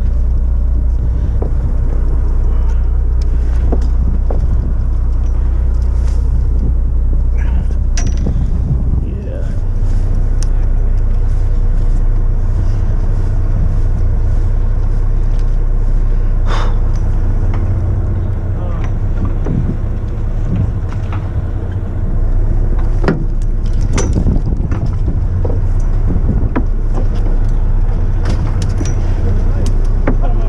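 Sportfishing boat's engine running with a steady low rumble, its pitch stepping up about nine seconds in as it is throttled. Scattered sharp clicks and knocks ride on top.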